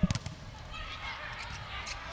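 A sharp smack of a volleyball being struck right at the start, followed by the low, steady murmur of the arena crowd with faint voices.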